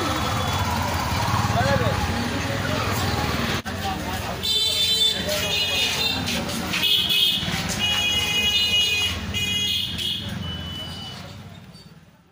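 Street noise with people talking, then, after a cut, a series of high, steady beeping tones that start and stop over the voices. The sound fades out at the end.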